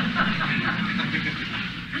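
Steady hiss and room noise of a lecture recorded on cassette tape, with no speech.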